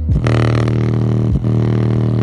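JBL portable Bluetooth speaker playing a long, deep bass note loudly while its passive radiator pumps in and out. The note breaks off briefly once, near the middle, then carries on.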